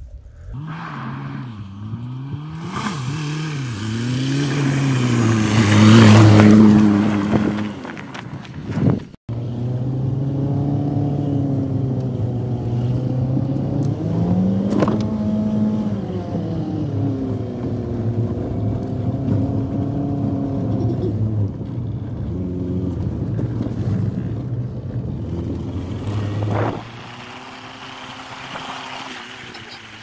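Volkswagen Golf Mk3 estate's engine revving up and down as the car is driven on a dirt track, its pitch rising and falling with throttle and gear changes. It is loudest about six seconds in, cuts out for an instant about nine seconds in, and drops to a quieter, steadier note near the end.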